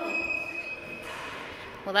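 A voice holding a drawn-out sound that fades out about a second in, over a faint steady high tone. Speech starts again at the very end.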